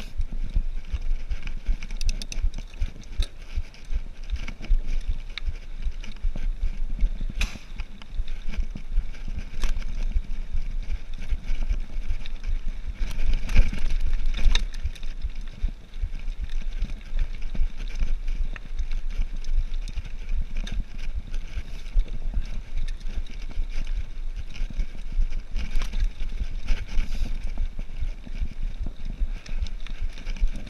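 Cannondale Trail 7 hardtail mountain bike ridden slowly over a dirt trail: a constant low rumble of tyres on dirt with a steady clatter and rattle of chain and frame over bumps, heaviest about halfway through.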